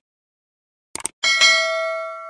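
A quick double click, then a bright bell ding that rings on and slowly fades: the click-and-bell sound effect of a subscribe-button animation.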